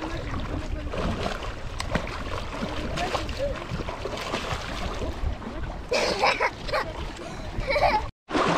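Water splashing as a child kicks on a bodyboard in shallow lake water and tumbles off it, with voices in the background and a louder burst of voice and splashing about six seconds in.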